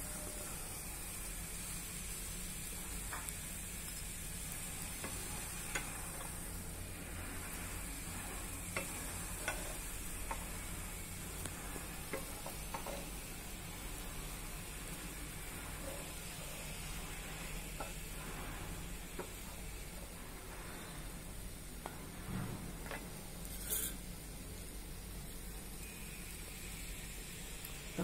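Soft scrapes and taps of a wooden spatula stirring and scooping rava sheera (semolina halwa) in a nonstick pan, over a faint steady sizzle of the ghee-rich mixture. There is one sharper click about three-quarters of the way through.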